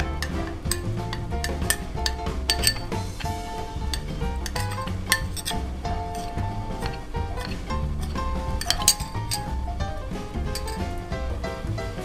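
A metal spoon clinking repeatedly against a small glass bowl as starch is stirred into water. Background music plays throughout.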